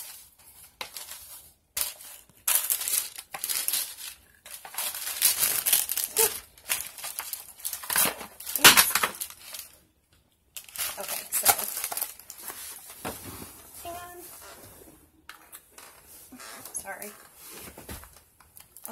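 Paper packing in a cardboard gift box crinkling and rustling as it is pulled out by hand, in irregular bursts with brief pauses about halfway and about three-quarters of the way through.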